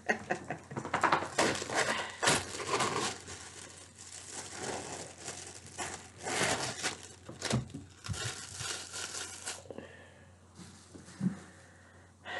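Clear plastic film lid being peeled off a Hungry-Man TV dinner tray, crinkling and tearing in a dense crackle that stops about two seconds before the end.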